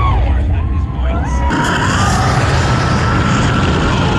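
Hagrid's Magical Creatures Motorbike Adventure coaster car running along its track with a low rumble. About a second and a half in, this turns abruptly into a loud rushing hiss as the car passes through a fog effect.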